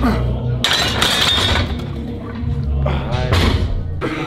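A loaded barbell with steel plates clanking, a sharp metallic clatter about half a second in that rings for about a second. Gym music with a heavy steady bass plays under it, and a man's voice calls out near the end.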